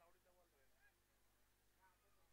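Near silence, with faint, indistinct distant voices.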